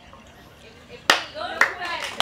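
Hand claps: a few sharp claps starting about a second in, the first the loudest, with a voice talking among them.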